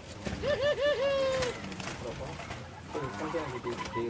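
Zebra dove (perkutut) cooing: three quick rising-and-falling notes followed by one long held note, about half a second in.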